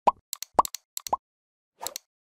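Three short, rising 'bloop' pop sound effects with several sharp clicks between them: the sound effects of an animated like-and-subscribe button overlay.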